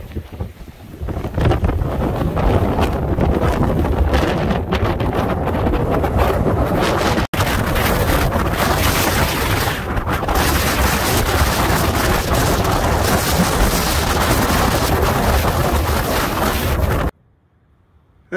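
Strong dust-storm wind blowing hard across the microphone: a steady, loud rushing noise with no pitch to it, with a brief dropout about seven seconds in, cutting off suddenly about a second before the end.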